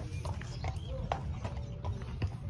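Horse's hooves clip-clopping on hard ground, a few irregularly spaced steps over a steady low rumble.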